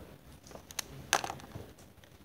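A couple of light clicks, then one sharp knock about a second in, over faint room noise.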